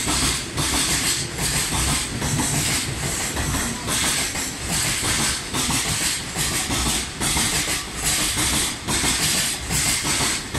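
Freight train's container wagons rolling through a station without stopping. The wheels clatter over the rail joints in a regular beat, over a steady high hiss.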